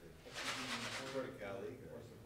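Indistinct voices of people talking in a small room, with a brief hissing burst about half a second in.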